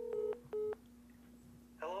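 Telephone tones used as a phone-call sound effect: a steady beep broken into short multi-tone pulses, stopping about a third of a second in, with one more short beep just after half a second.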